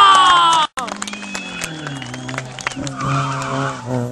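Peugeot 106 GTI's 1.6-litre four-cylinder engine revving hard and loud, its pitch sagging slightly, cut off abruptly under a second in; then the engine is heard more quietly, its revs rising and falling.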